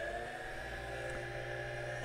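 Electric motor, under trial as a turbine starter, spinning with no load at full PWM throttle: a steady whine at high revs. One tone climbs a little in pitch at the very start as the motor reaches full speed, then holds.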